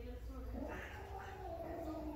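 Long-haired Persian cat giving one long, wavering yowl that starts about half a second in.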